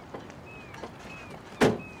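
A single loud thump about one and a half seconds in, with a short ringing tail. Under it a faint high chirp falls in pitch and repeats about twice a second.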